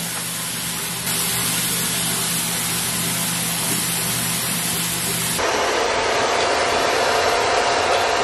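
Tap water running steadily from a bathroom sink faucet as hair is rinsed under it. About five seconds in, the sound cuts abruptly to the steady blowing of a hair dryer.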